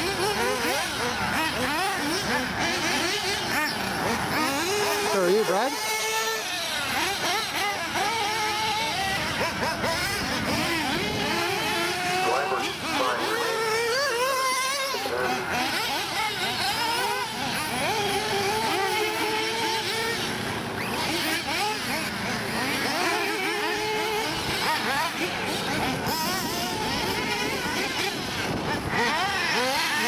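Several 1/8-scale nitro RC buggies racing: their small two-stroke glow engines whine at high pitch, revving up and down as they accelerate and brake, several at once and overlapping.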